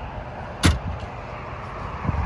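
The latch of a MasterCraft wind dam, the hinged panel of the walk-through windshield, clicking once sharply about two-thirds of a second in, over a steady low rumble.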